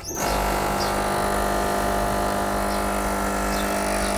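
An espresso machine's pump switches on just after the start and hums steadily as it forces hot water through loose red tea leaves in the portafilter, extracting tea.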